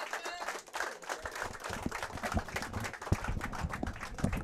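Audience applauding: a steady patter of many hand claps.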